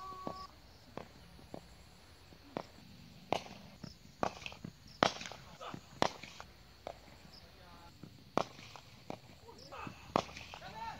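Cricket bat striking the ball: a run of sharp cracks, about a dozen, irregularly spaced, the loudest about five seconds in.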